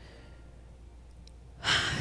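Faint low room hum, then about one and a half seconds in a loud, breathy rush as the speaker draws a breath close to a handheld microphone just before speaking.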